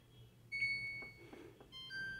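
Samsung top-load washing machine control panel beeping as its Eco Bubble button is pressed. One short beep comes about half a second in, and a second, lower beep starts near the end.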